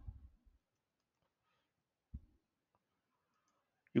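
Faint computer keyboard typing, with a single short low thump about two seconds in.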